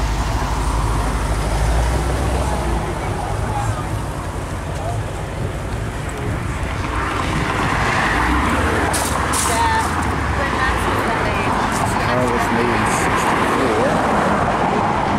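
People talking in the background over a steady low rumble of vehicles.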